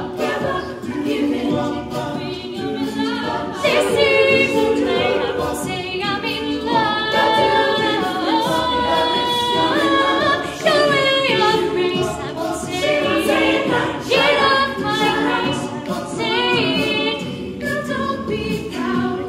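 Mixed-voice a cappella group singing live, a woman's solo voice carried over sung backing harmonies with no instruments.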